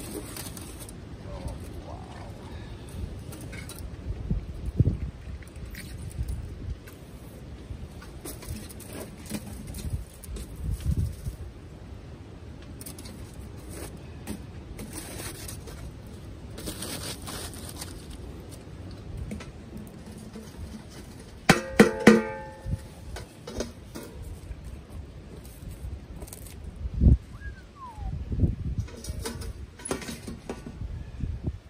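Wind gusting over the microphone with a low rumble, while aluminium foil crinkles and metal pots and a steel can oven knock together over a campfire. About two-thirds of the way through comes one sharp, ringing metal clang.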